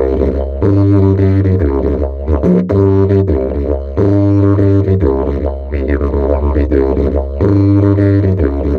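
A large wooden didgeridoo by the maker Paul Osborn, played as one unbroken low drone. Its overtones shift in a rhythmic pattern, and a louder, fuller phrase comes back about every three and a half seconds.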